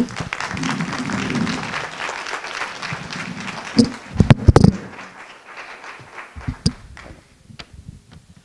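Audience applauding, the clapping dying away over the second half. A few loud thumps come about four seconds in.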